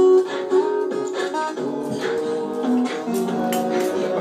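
Layered guitar loops playing back through a Boss loop station, several held notes sounding at once over a steady strummed bed.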